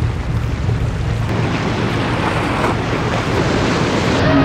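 Sea waves washing and breaking against a rocky shore, with wind buffeting the microphone: a steady rush of noise.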